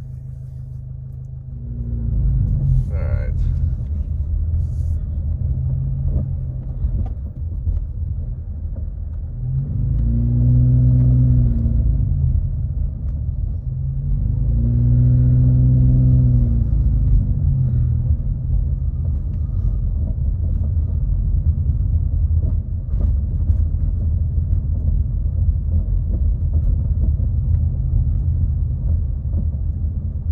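A car's low driving rumble of engine and road noise, heard from inside the cabin as it moves slowly through town traffic. Twice, around the middle, the engine note swells up and falls back as the car speeds up and then eases off.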